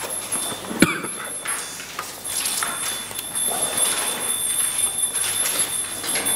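Rustling of book pages being turned and leafed through, with a sharp knock about a second in.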